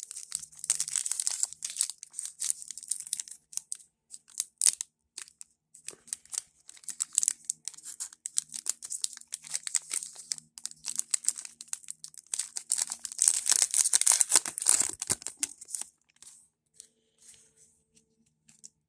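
Foil wrapper of a Panini Mosaic football card pack being torn open and crinkled by hand: crackling, rustling bursts, loudest in the first few seconds and again a few seconds before the end, dying away shortly before the end.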